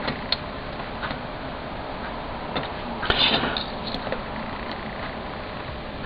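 Quiet bench work while hand-soldering a surface-mount battery holder onto a circuit board: a few faint light clicks and a brief soft hiss about three seconds in, over steady background hiss.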